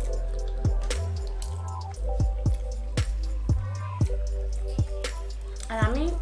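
Background music: a steady beat of short, plucked, drip-like notes over a bass line.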